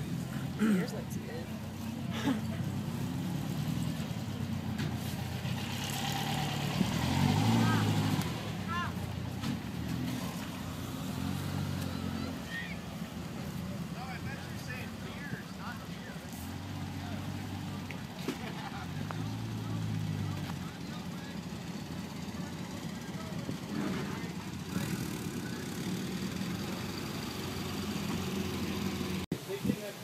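People talking in the background, on and off, over a steady low outdoor hum. A man says 'Yeah, it is' about two seconds in.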